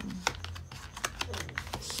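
Quick plastic clicks and crinkles as a plastic pocket folder is handled and pressed onto the discs of a disc-bound planner.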